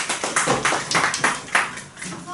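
Applause from a small audience, a dense patter of irregular hand claps that thins out and fades near the end.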